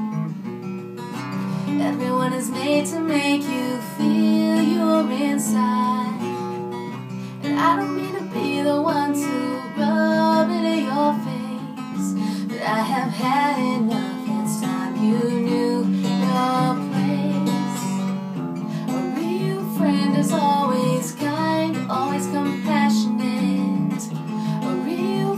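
Acoustic guitar strummed in steady chords, accompanying a woman singing.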